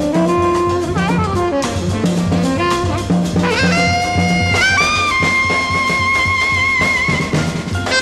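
Jazz quartet playing: tenor saxophone leads over walking double bass, drums and cymbals. A little past the middle the saxophone climbs in a quick rising phrase, then holds one long high note with a slight vibrato until near the end.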